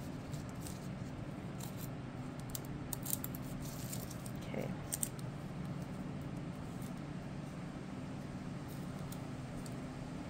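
Small scissors snipping thin nail transfer foil, a few short quiet snips in the first half, over a steady low hum.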